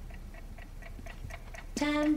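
A clock ticking steadily, about four ticks a second, as the intro of a pop song, with a woman's voice beginning to sing near the end.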